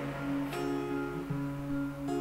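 Steel-string acoustic guitar with a capo, strumming an A chord from a G–A–D–Bm progression, the notes ringing between strokes.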